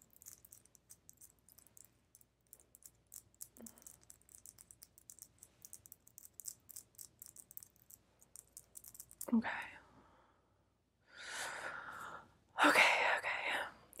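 Faint, rapid crackling and scratching of fingertips working close to the microphone, as hands run through the listener's hair, stopping about nine seconds in.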